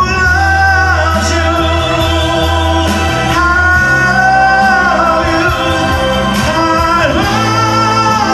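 A man singing a dramatic ballad into a microphone over a karaoke backing track, holding long notes.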